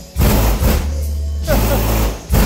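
Car audio system with subwoofers playing a song loudly as a bass test: long, deep bass notes with heavy drum hits, one near the start and one about one and a half seconds in.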